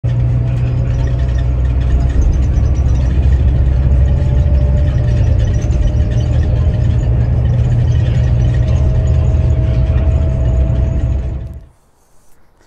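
Bus cabin at highway speed: a loud, steady low rumble of engine and road noise with a thin whine that rises slightly in pitch, cutting off suddenly near the end.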